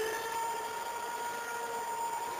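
Hardstyle dance music at a break: a single synthesizer note held steady over a faint hiss.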